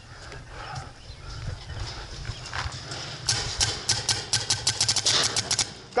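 Paintball markers firing rapidly: a string of sharp pops, about eight to ten a second, starting about halfway through and running for over two seconds, over a low rumble.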